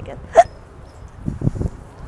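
A single short yelp-like vocal sound about half a second in, followed by low rumbling thumps of wind buffeting the microphone.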